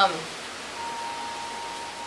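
Steady hiss of outdoor background noise. A faint, thin steady tone comes in about a second in.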